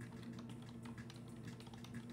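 Faint typing on a computer keyboard: quick, irregular key clicks over a low steady hum.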